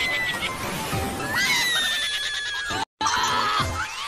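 Cartoon soundtrack: background music with high, squeaky sliding calls that rise and fall in pitch, the sound cutting out briefly just before three seconds in.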